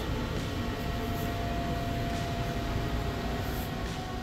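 Steady background machinery hum and hiss, with a faint steady whine.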